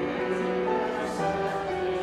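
Slow church music: a choir singing long, held notes that step from chord to chord.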